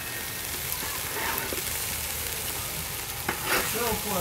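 Ground-beef burger patties sizzling on the grate of a small charcoal grill over lump charcoal: a steady, even hiss.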